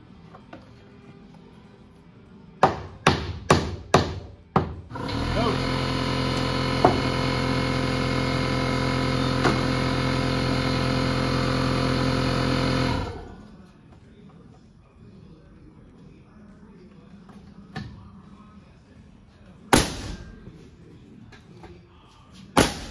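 Pneumatic nailer fired five times in quick succession into wood framing, then an air compressor motor runs steadily for about eight seconds before shutting off, the compressor refilling its tank after the shots. One more nail shot comes near the end.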